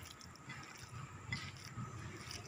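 Faint, irregular wet squishing of a hand kneading a minced chicken and egg filling in a plate, with a few small ticks.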